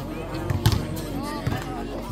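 A basketball thudding a few times on the outdoor court, the loudest impact a little under a second in, with voices and background music underneath.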